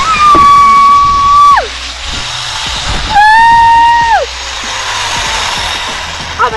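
A zipline rider's high-pitched screams as they ride the line: two long held cries, each sliding down in pitch at its end, the second starting about three seconds in, with a rushing of wind on the microphone between them.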